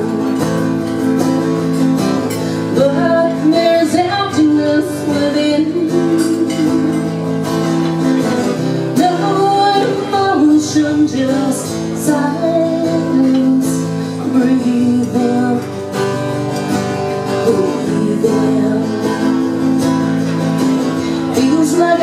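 Acoustic guitar playing the instrumental intro of a slow country song, live through the house sound.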